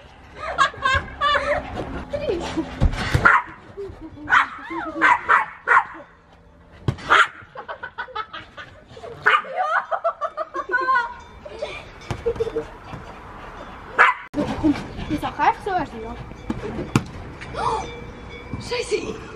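Small Pomeranian-type dog barking and yapping in short bursts, among children's laughter and squeals.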